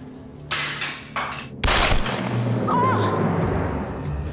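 Over a dramatic music score, two sharp knocks, then about a second and a half in a loud bang whose rattling crash dies away over the next second or two.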